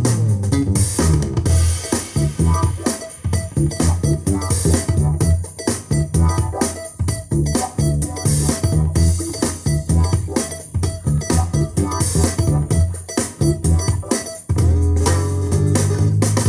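Instrumental music with a steady beat, bass, keys and guitar, played through a custom 5-inch two-way bookshelf speaker and picked up by an Asus L2 phone's built-in microphone. The music briefly dips near the end.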